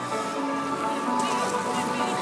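Background music playing over a public-address loudspeaker, a run of held notes.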